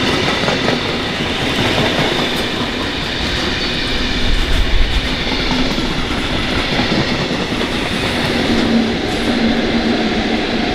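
Freight train of wagons rolling past at speed, its wheels clattering steadily over the rails. Near the end a low steady drone comes in as a RailAdventure Class 43 HST diesel power car draws level.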